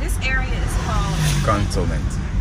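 Steady low rumble of a Hyundai van's engine and tyres heard inside the cabin while driving along a road, with indistinct voices over it.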